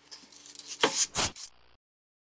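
Two quick rubbing strokes of a shop rag wiped over a driveshaft slip-yoke shaft, about a second in, cleaning it smooth so it won't damage the seal; the sound then cuts off abruptly.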